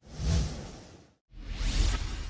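Two whoosh sound effects in an animated logo intro, one after the other. The first swells quickly and fades away over about a second, and the second rises after a brief gap.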